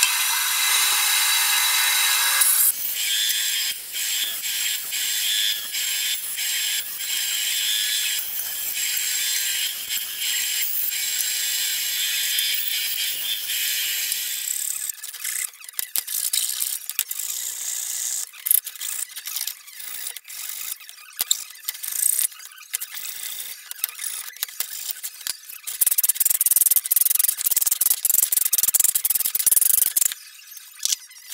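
A bandsaw running and cutting, which stops abruptly about three seconds in. Then a long stretch of hand-tool scraping and rasping strokes along the edges of the plastic-and-wood channel letters: steady at first, then irregular and clicky, loudest near the end.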